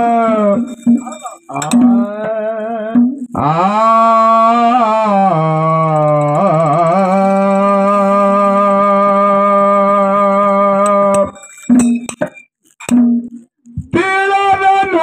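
A man singing long, drawn-out notes with a wavering vibrato, one note held for several seconds; the singing breaks off about eleven seconds in, followed by a few short clicks.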